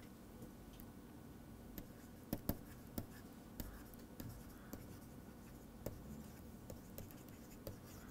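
Faint stylus-on-tablet handwriting: a scatter of light pen taps and scratches as words are written on a digital writing surface.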